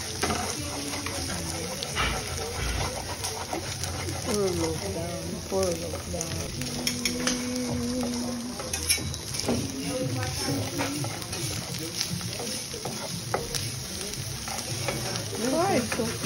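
A wooden spoon stirring and scraping a frying pan of chopped sausage, onion and egg that is sizzling, with short clicks of the spoon against the pan.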